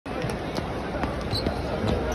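Basketball arena ambience: a steady murmur of crowd voices with short sharp thuds on the court, about two a second.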